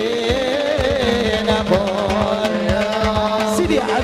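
A qasidah, devotional Arabic song in praise of the Prophet, sung by a voice with a winding melody over a steady low drone, accompanied by hand-drum beats several times a second.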